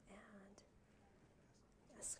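Near silence: room tone, with a brief, faint stretch of quiet speech at the start that is too soft to make out.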